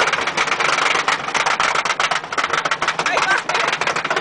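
Wooden roller coaster train rattling along its track, with riders' voices over it.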